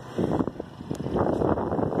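Wind buffeting the microphone outdoors: an uneven rushing noise that rises and falls, with a few faint clicks.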